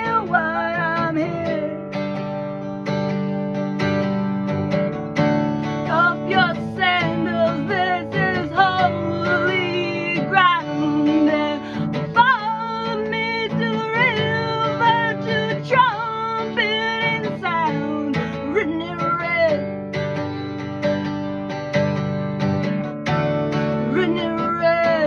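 Acoustic guitar strummed steadily, with a woman singing a sliding, drawn-out melody over it.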